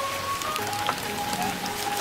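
A big knife cutting through the crisp, charred crust of spit-roasted wild boar meat held in bamboo skewers, a fine dense crackling. Soft background music with held notes plays underneath.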